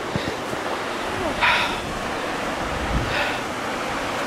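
Steady rushing wind noise on the microphone, with a couple of brief louder puffs about a second and a half in and again near the end.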